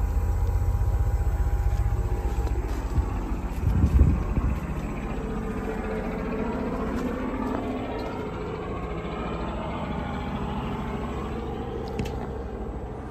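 Carrier Infinity 24 heat pump outdoor unit running in heat mode, a steady hum of fan and compressor. A brief loud low rumble comes about four seconds in.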